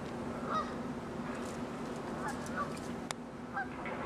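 Scattered short bird calls, honk-like notes repeated every second or so, over a steady low hum, with one sharp click a little after three seconds.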